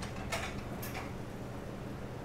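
Steady low hum of commercial kitchen equipment. Two faint short scrapes or clicks come in the first second as a metal utensil is picked up off the stainless steel counter.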